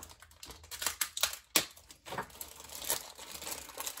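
Clear plastic kit bag crinkling and rustling as it is handled and opened to take out a plastic sprue, with irregular sharp crackles, the sharpest about one and a half seconds in.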